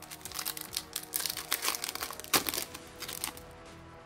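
Foil wrapper of a Yu-Gi-Oh! booster pack crinkling and crackling as it is handled and opened, in a dense run of crackles that stops about three seconds in.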